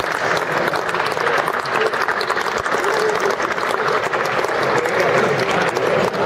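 Audience applauding, a steady dense clapping throughout.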